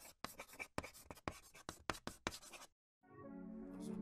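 Pen-on-paper writing sound effect: a quick run of short, scratchy strokes that stops just under three seconds in. Music then fades in near the end.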